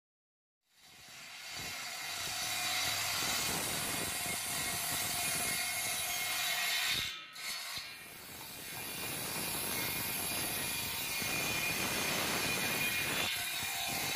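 Homemade 12-volt table saw, its 10-inch blade driven by a Denso car power-steering motor, running and cutting through hardwood: dense steady mechanical noise with a faint steady tone. The noise breaks off briefly about seven seconds in, then resumes.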